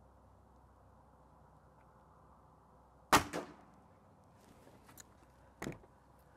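A .22 break-barrel air rifle (Gamo Magnum Gen 2) fires a single shot about three seconds in: one sharp, loud crack with a brief ring-out. A few faint ticks and a smaller knock follow near the end.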